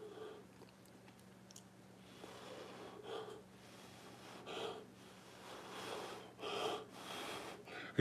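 Short, soft puffs of breath blown by mouth onto wet acrylic pour paint, about six in a row, spreading the paint to enlarge the cells and blend them into the background.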